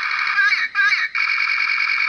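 Built-in sound chip of a novelty grenade-shaped lighter playing through a tiny, tinny speaker. A clipped recorded voice calls 'fire, fire', followed about a second in by a steadier electronic battle sound effect.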